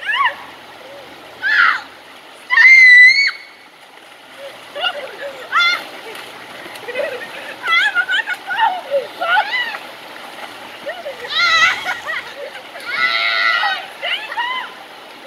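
Young people shrieking, yelling and laughing with water splashing during a splash fight, over the steady rush of river rapids. The loudest is a held high scream about three seconds in; another long cry comes near the end.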